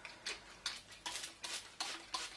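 Plastic trigger spray bottle squirting water onto a face in a quick run of short sprays, about three a second.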